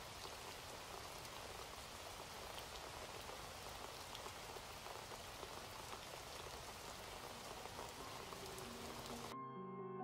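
Faint, steady hiss of noise with a fine patter in it. Near the end it cuts off suddenly and soft electric-piano notes begin.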